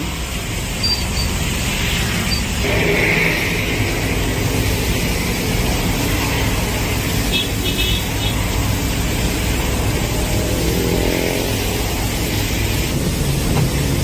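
Steady engine and road noise heard from inside the cabin of a moving vehicle, with surrounding traffic.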